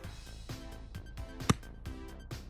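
A golf iron striking the ball once, a sharp crack about one and a half seconds in, the loudest sound here. Background music with a steady beat runs under it.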